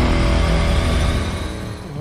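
Cinematic background music: a held, sustained swell that fades out toward the end.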